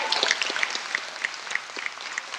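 Audience applauding, a dense, steady patter of many hands clapping.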